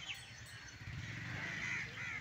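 Faint bird calls outdoors, with a few short falling notes right at the start, over a low background rumble that swells slightly in the second second.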